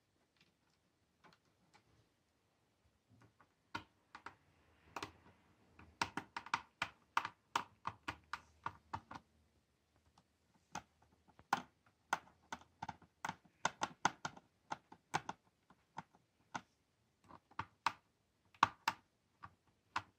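Small screwdriver driving screws back into a laptop's plastic bottom cover: light, irregular clicks and ticks of metal on screw and plastic, sparse at first and then coming in quick clusters from a few seconds in.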